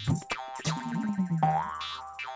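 Opening theme music of a TV comedy show, with a quick beat of about four strokes a second. Near the end it gives way to a held note and a rising pitch slide.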